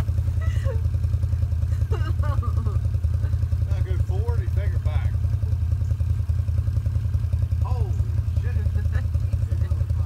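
Side-by-side UTV engine idling steadily, a low, evenly pulsing running note, with voices calling out over it now and then.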